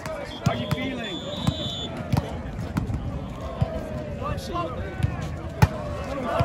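A volleyball bounced several times on asphalt before a serve, ending in a sharper, louder hit near the end. A whistle sounds twice in the first two seconds, over a steady babble of crowd voices.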